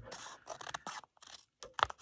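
Scissors snipping through a sheet of watercolour paper in a few short, sharp cuts, with a brief pause between them.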